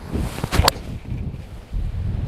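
Golf club swishing through the downswing and striking a Callaway Speed Regime 3 ball off the tee: a rush of air, then one sharp crack of impact about half a second in.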